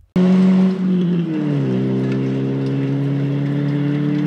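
Hyundai Excel rally car's engine running hard on a gravel stage, over a hiss of tyres on gravel. The engine note drops in pitch about a second and a half in, then holds steady until it cuts off near the end.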